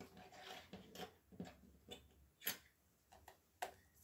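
Faint handling sounds: a light rustle and a few scattered soft ticks as a cellophane-wrapped craft die packet is set down and adjusted on a paper notebook.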